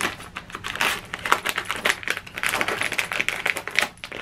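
Clear plastic packaging crinkling and rustling in the hands as a small accessory is unwrapped, a dense, irregular run of crackles and clicks.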